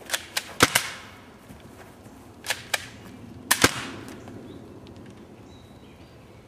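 A volley of gunshots, eight sharp cracks in three groups: four in the first second, two about two and a half seconds in, and two more a second later, the last ringing out briefly.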